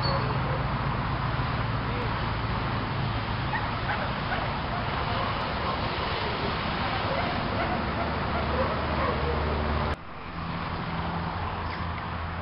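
German shepherd barking over a steady low hum, with voices; the sound changes abruptly about ten seconds in.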